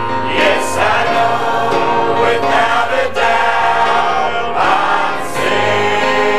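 Mixed church choir of men and women singing a gospel song, holding long sustained chords.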